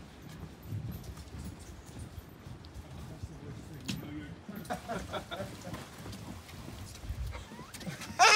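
Footsteps on a wooden boardwalk, with wind rumbling on the microphone. Faint voices and a laugh come in about halfway through.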